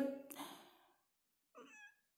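The tail of a spoken word fades out, then a quiet stretch. Near the end comes one faint, short cry that bends in pitch.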